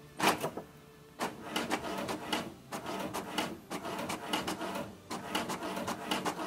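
Inkjet printer feeding and printing a page: a sharp mechanical clunk just after the start, then from about a second in a fast, busy run of clicks and whirs as the carriage shuttles and the paper advances.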